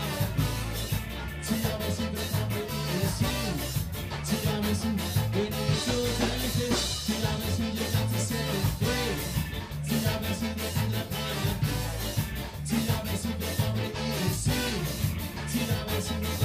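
Live ska band playing, with horns, electric guitar, a drum kit and a walking low bass line, and a vocalist singing over it.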